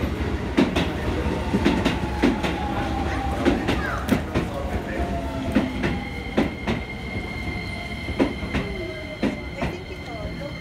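Stainless-steel commuter train running into a station platform. Its wheels click over the rail joints in an uneven run, under a whine that falls slowly in pitch. From about halfway through, a high steady squeal joins in.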